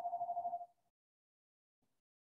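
A steady, single-pitched electronic tone that stops abruptly less than a second in, followed by silence.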